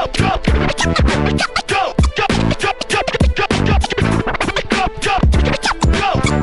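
DJ scratching a record on a turntable over a hip hop beat: rapid, chopped scratch strokes with short rising and falling pitch sweeps, cut in and out at the mixer, over a steady kick drum.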